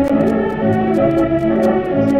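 Orchestra playing sustained melodic lines over a moving bass, heard on an old broadcast recording with the top end cut off and steady crackle of clicks over the music.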